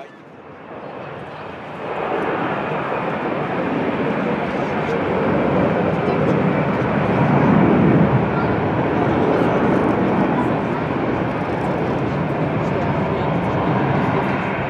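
Twin-engined Airbus A320 at takeoff thrust: a broad jet roar that swells about two seconds in, is loudest around the middle as the jet lifts off and climbs, then holds steady.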